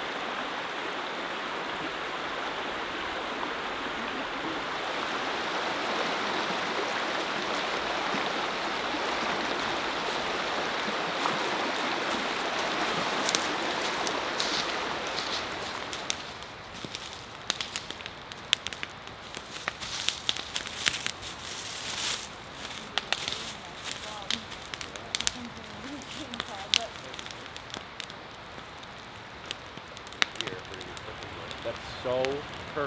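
A forest stream rushing over rocks, a steady even noise. About halfway through it gives way to a brush bonfire of branches crackling, with irregular sharp pops and snaps.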